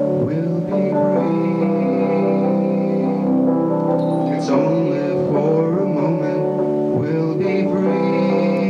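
A band playing an instrumental passage between sung lines: guitar over long sustained chords, with notes changing every second or so.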